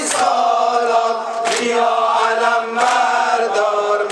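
Men's voices chanting a Muharram mourning lament together, with a sharp collective beat of hands striking chests about every second and a half.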